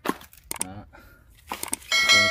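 Several short, sharp clicks and knocks of handling, in two clusters about half a second in and near the end, with brief bits of speech among them.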